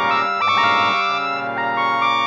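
Trumpet and piano music: held notes over sustained chords, moving to new pitches a few times.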